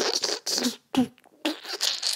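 A woman laughing in short, breathy bursts.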